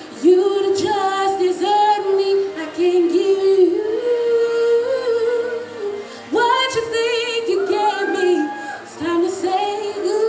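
A woman singing solo into a handheld microphone, holding long notes with vibrato and pausing briefly for breath about six and nine seconds in.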